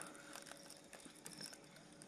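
Near silence, with a few faint scattered clicks over a low background hiss.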